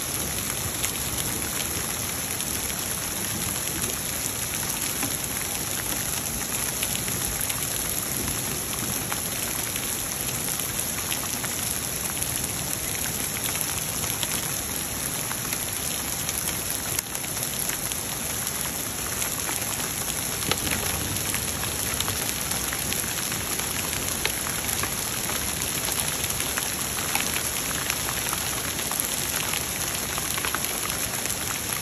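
Heavy rain mixed with small hail pelting a wooden deck and lawn: a steady, even hiss with scattered sharp ticks of hailstones striking.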